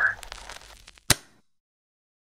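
Faint crackling fading away, then a single sharp click about a second in, followed by dead silence.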